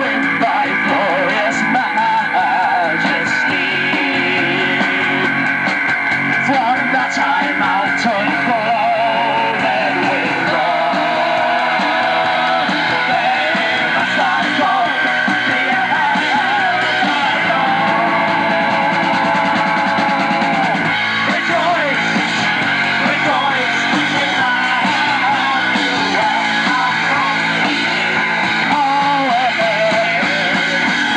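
A live rock band playing at full volume: electric guitar, drums and singing, steady throughout.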